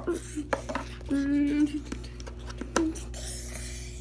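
A child making wordless vocal battle sound effects, with a held tone about a second in and a short hiss later, over light knocks and clatter of plastic toys being handled.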